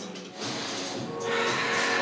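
A man sighs deeply: a long, breathy exhale starting a little past halfway, over background music with steady held notes.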